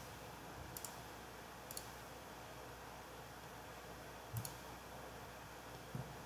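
A few faint, sharp clicks from computer use, spaced irregularly: three in the first two seconds and a last one about four seconds in that comes with a duller knock, over a low room hiss.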